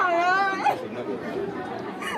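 A woman crying, her voice wavering through tears, with a crowd chattering behind her; her voice drops away after the first second or so, leaving the chatter.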